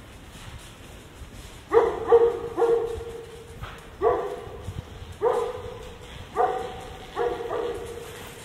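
A dog barking repeatedly, about eight barks starting a couple of seconds in: a quick run of three, then single barks, then a pair near the end.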